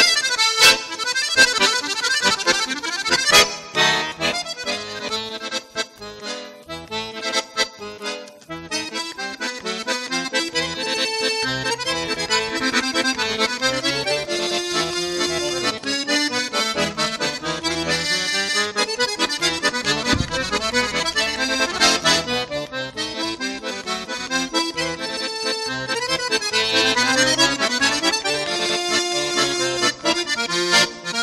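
Piermaria button accordion played solo in a quick, continuous flow of notes, softer for a few seconds shortly after the start before rising again.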